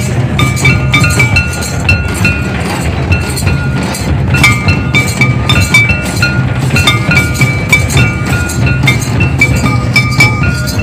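Tribal festival dance music: barrel drums beating a fast, steady rhythm, with bright metallic clinks and short ringing tones from small metal percussion over the top.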